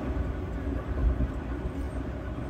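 Steady low rumble with hiss: background noise coming through a live-stream guest's open microphone.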